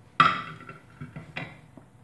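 A sharp clink of kitchenware being set down, with a brief ring, followed by a couple of light taps.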